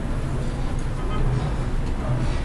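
Steady low background rumble and hum, with a few faint light clicks about a second in.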